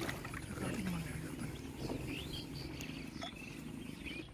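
Birds chirping in short calls over a steady low rumble, with faint water sounds around a wooden boat.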